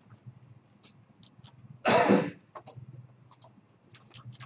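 A single short cough about two seconds in, among scattered light computer keyboard and mouse clicks.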